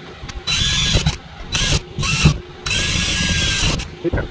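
Power drill running in four short bursts, the last about a second long, drilling out the aluminum rivets of a computer case.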